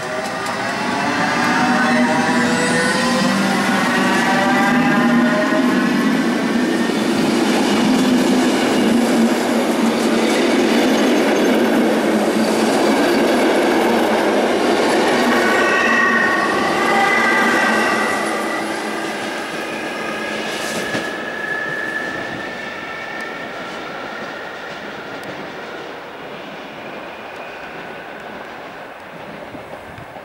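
Two coupled SNCB electric multiple units pulling away and passing close by: a whine that rises in pitch as they accelerate, over loud rumble and clatter from the wheels on the rails. The sound fades gradually as the train draws away, starting about eighteen seconds in.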